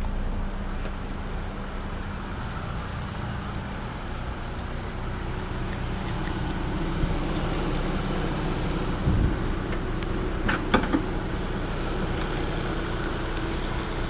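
Chevrolet S10's four-cylinder eight-valve flex engine idling steadily, with a few clicks and a knock about ten seconds in.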